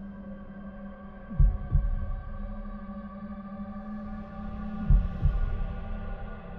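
A slow heartbeat sound effect: two deep lub-dub beats, about three and a half seconds apart, over a steady low droning hum. It is the sound of a heart that is getting slower.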